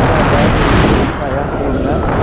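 Yamaha Mio M3 scooter's 125 cc single-cylinder engine running as it rides along, with a heavy low rumble of wind and road on the onboard microphone.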